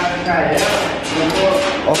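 Men's speech, loud and close, with no other sound standing out.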